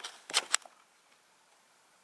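A kitten pouncing and scrabbling on a shaggy rug at a dangled strap: a quick flurry of scratchy rustles and clicks in the first half-second.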